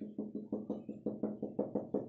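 A rapid run of the same short pitched note repeated about six times a second, each note fading quickly, like a simple electronic tune or ringtone.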